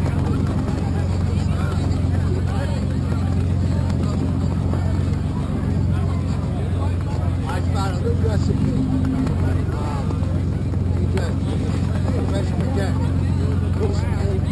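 A steady low motor hum runs under the indistinct voices of people talking.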